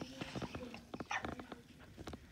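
Border collie giving a faint, long, steady whine, with a short breathy sniff about a second in and a few soft clicks.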